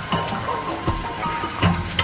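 Background music with steady held tones, overlaid by scattered small clicks and knocks.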